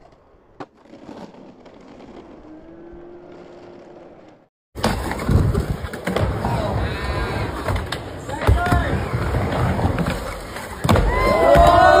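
Skateboard wheels rolling on concrete, with sharp knocks of the board and trucks hitting the ramp. About five seconds in the sound jumps louder, and people are shouting, loudest near the end.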